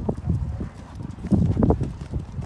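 Horse cantering on a sand arena surface: dull, muffled hoofbeats in a repeating rhythm. They grow louder about halfway through as the horse passes close by.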